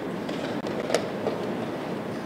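Blitz chess being played: one sharp click about a second in as a move is made at the board, then a fainter tap, over a steady haze of room noise.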